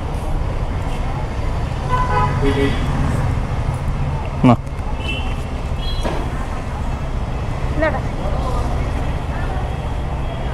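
Steady low rumble of vehicle engines and traffic, with voices talking in the background and a short sharp rising sound about halfway through.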